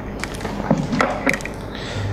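Microphone handling noise: a handful of sharp knocks and rubs, about four in two seconds, as the microphone is fiddled with and repositioned, over a low steady hum.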